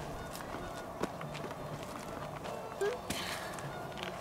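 Faint footsteps and rustling on dry grass and dirt, with small scattered clicks and a brief faint voice about three seconds in.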